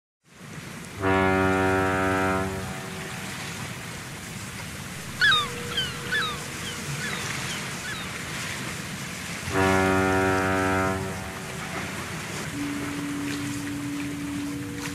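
Two long blasts of a deep ship's horn, about eight seconds apart, over a steady wash of sea and surf. A few birds call briefly between the blasts, and a steady low tone comes in near the end.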